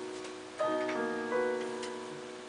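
Digital piano playing a slow introduction: sustained chords struck about every three-quarters of a second, each ringing and fading before the next.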